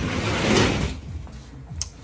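A brief scraping rustle close to the microphone, about a second long, over a steady low hum; a faint click near the end.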